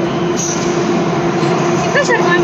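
Metro train running in an underground station: a loud, steady rumble with a constant hum, and a high hiss joining about half a second in.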